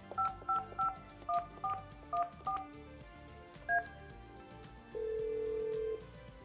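Yealink T29G desk phone keypad sending seven quick DTMF key tones as the digits 5551414 are dialled, then one more key beep as the call is sent. About a second later a steady ringback tone starts over the speakerphone as the outgoing call rings.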